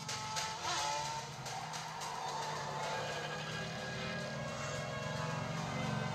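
A film soundtrack played through a monitor's built-in speaker: a music score mixed with vehicle engine sounds from a motorcycle-and-car chase.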